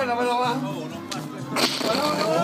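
Music playing with a steady low note and a voice over it, then a sharp hissing crack about one and a half seconds in.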